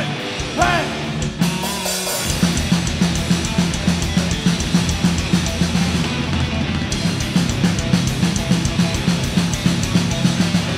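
A melodic metalcore band playing: distorted electric guitars, bass and drum kit. About a second and a half in, the music changes from a short repeated melodic figure to a heavy, driving riff with the drums keeping an even beat.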